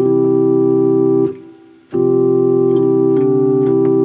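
Sustained keyboard chords in C, played to demonstrate a suspended (sus4) chord and its resolution. The first chord holds steady and stops about a second in. After a short pause a second chord is held, with one note briefly shifting near the end.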